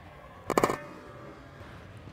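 Tennis ball struck with a racket on a drop volley: a brief cluster of sharp knocks about half a second in.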